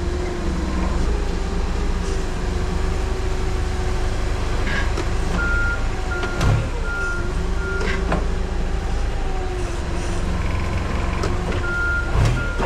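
Forklift running while loading a pallet into a cargo van: a steady, slightly wavering motor whine over a deep rumble, with its warning beeper sounding in a quick series of beeps about halfway through and again near the end. A couple of sharp knocks come as the pallet is set down on the van floor.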